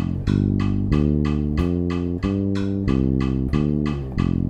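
Electric bass plucked in single notes, walking through the G minor pentatonic scale on a steady quarter-note pulse against a 7/8 count. A steady ticking, about four ticks a second, runs under it.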